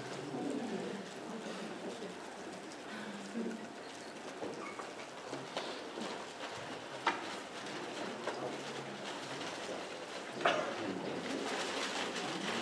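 Low murmur of people talking quietly among themselves, with two sharp knocks, the louder one near the end.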